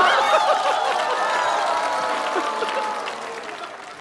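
Studio audience laughing and applauding at a punchline. It starts loud and dies away over the few seconds.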